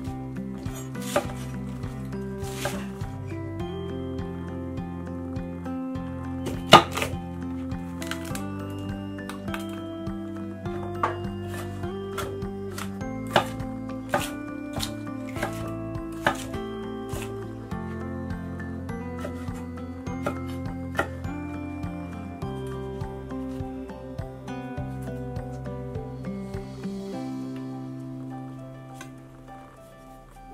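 Kitchen knife cutting vegetables on a wooden cutting board, in irregular single strikes, the loudest about seven seconds in, over steady background music.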